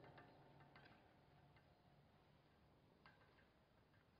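Near silence, with a few faint ticks and taps of a marker pen writing on a whiteboard.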